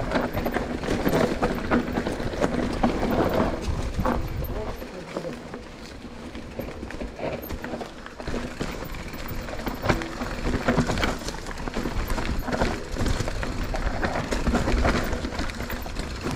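Mountain bike riding down a dirt forest trail: tyre noise and repeated rattles and knocks from the bike over bumps, with wind rumbling on the microphone, heaviest in the first few seconds and again near the end.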